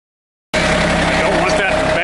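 After a brief silence, the three-cylinder diesel of a John Deere 855 compact tractor cuts in abruptly and runs steadily at low speed, with a steady tone over its rumble.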